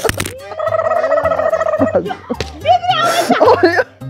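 Loud voices, including a long drawn-out vocal sound and a noisy outburst near the end, over background music with a low pulsing beat. A sharp smack comes right at the start.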